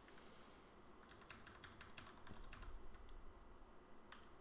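Faint computer keyboard typing: a quick run of soft key clicks, thickest through the middle couple of seconds.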